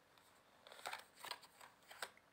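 A deck of tarot cards being shuffled by hand, giving a quick run of short, crisp swishes as the cards slide over each other, beginning about half a second in.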